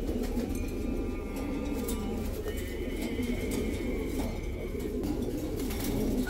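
Domestic pigeons cooing steadily in a cage, a continuous low murmuring coo.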